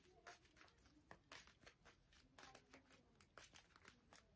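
Faint, irregular flicks and slides of playing-card stock as a deck of Lenormand cards is shuffled by hand, cards dropped from one hand onto the other.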